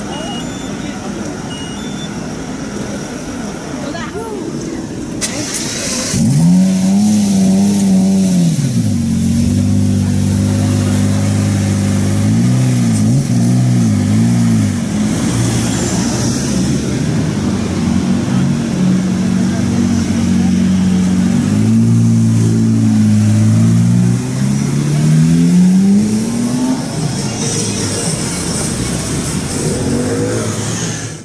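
Lamborghini Reventón's V12 engine starting about six seconds in with a rev that rises and falls. It then runs low with a few quick throttle blips and pulls away, its pitch climbing steadily near the end. Crowd chatter comes before the engine.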